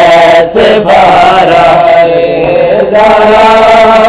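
A noha (Urdu lament) chanted by male voices, drawn out in long held notes with brief breaks between phrases.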